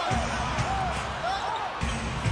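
Basketball being dribbled on a hardwood court, low repeated bounces, over steady arena crowd noise and faint voices.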